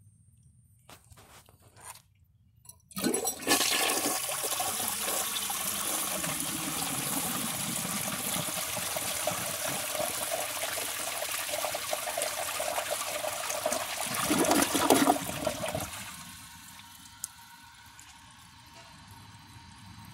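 1967 Gerber Mount Vernon toilet flushing properly, its siphon jet and trapway freshly cleared of mineral buildup. After a few faint clicks, the flush starts about three seconds in with about eleven seconds of steady rushing water, rises to its loudest gurgle as the bowl empties, then drops to the quieter sound of the tank refilling.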